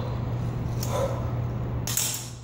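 A woman breathing hard while exercising with a barbell: a short grunt about a second in and a sharp exhale near the end, over a steady low hum.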